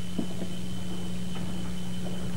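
Steady low electrical hum with a thin high tone and hiss from an old analogue recording of a hall, broken by a couple of faint knocks.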